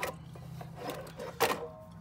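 A few sharp metallic clicks and knocks from handling tools and brake parts, the loudest about a second and a half in, over a steady low hum.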